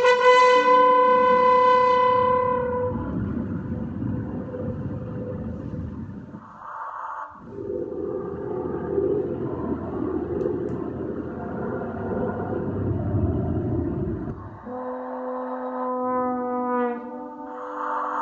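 Horn and live electronics. A held horn note fades away over the first few seconds into a dense, rumbling noise texture that breaks off briefly about seven seconds in. The noise stops about fifteen seconds in, when steady horn tones on two pitches return.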